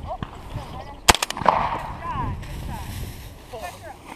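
A shotgun fires once, a sharp blast about a second in, on an upland bird hunt.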